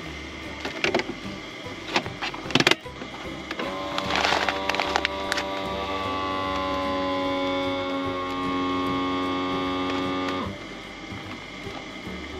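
Wiswell countertop vacuum sealer's pump motor running with a steady hum for about seven seconds as it draws the air out of a plastic bag of rice, then cutting off suddenly. A few sharp clicks come first as the bag is set in and the lid pressed shut.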